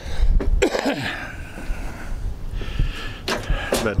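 A man coughing hard in the first second, ending in a short falling throaty sound, followed by heavy breathing over a steady low rumble.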